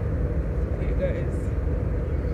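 Steady drone of a passenger jet's cabin: engine and air-system noise heard from a seat inside, with faint voices in the background about a second in.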